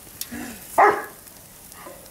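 A dog barks once, loudly, about a second in, just after a shorter, lower sound.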